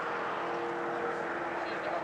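Distant racing boat's engine running at speed, a steady drone holding an even pitch over the hiss of wind and water.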